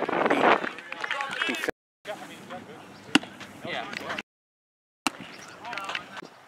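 Spectators cheering and shouting, loudest in the first half-second, then fading to scattered voices with a single sharp knock about three seconds in. The sound drops to dead silence twice where the footage is cut.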